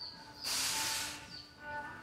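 A short hiss lasting about half a second, just under halfway through, over faint background music.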